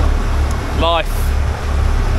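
Continuous low rumble aboard a motor fishing boat under way, swelling and dipping, with a man's voice saying one word about a second in.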